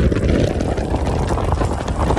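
Steady rumble of a Toyota Yaris sedan driving fast over a dusty gravel track, heard from a camera mounted on the outside of the car: tyre and road noise mixed with wind buffeting the microphone.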